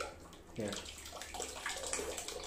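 A stream of water squirting from a squeezed rubber duck, splashing steadily into the bath water of a plastic tub from about half a second in.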